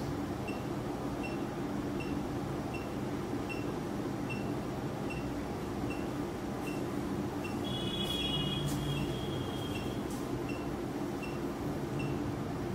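Operating-room equipment hum with a short, high beep repeating evenly about every 0.6 s, the steady pulse tone of a patient monitor. About eight seconds in, a longer, higher electronic tone sounds for about a second.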